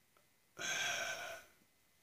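A man's breathy sigh, about a second long, starting about half a second in.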